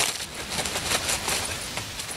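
Plastic packaging crinkling and rustling as a pack of adult diapers is torn open by hand and a diaper is pulled out: a dense, irregular crackle.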